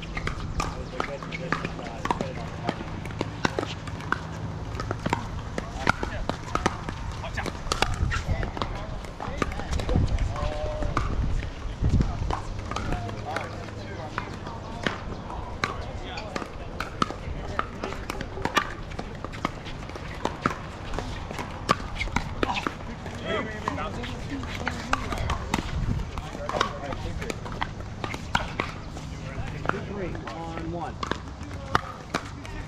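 Irregular sharp pops of pickleball paddles striking plastic balls, many of them from neighbouring courts, with people's voices in the background.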